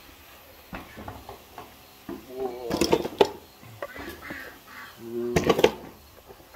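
Goats bleating: one call about two seconds in and another near the end, each under a second long. A few light knocks come before the first call.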